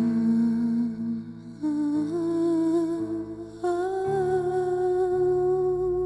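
Wordless female humming in long held notes with a slight waver, over a sustained low chordal drone. The voice steps up to a higher note about two seconds in and again just past halfway.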